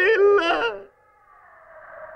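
A person's voice making drawn-out sounds with a wavering pitch, which stop about a second in. Then comes a brief near-silence and a faint background hum.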